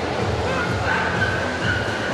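Dogs barking and whining over crowd hubbub; a thin, high, drawn-out whine holds from about half a second in.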